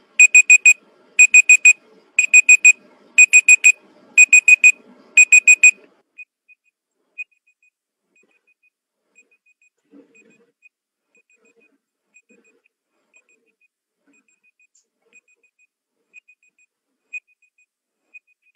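Countdown timer's alarm beeping at zero: six quick groups of four high beeps, about one group a second, for about six seconds, then only faintly. It signals that the timer has run out.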